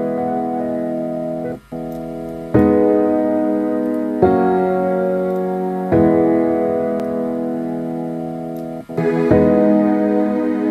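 Slow piano chord progression: sustained chords, with a new chord struck every couple of seconds.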